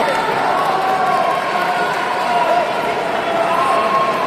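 Busy sports-hall din of many voices talking and calling, with a long drawn-out held voice through the first half and another near the end.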